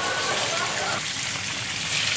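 Flatfish and herring shallow-frying in hot sunflower oil in a pan: a steady sizzle.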